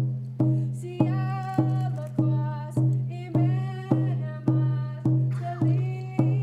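Hide hand drum struck in a steady beat, a little under two strokes a second, each stroke ringing on low, with a voice singing over it.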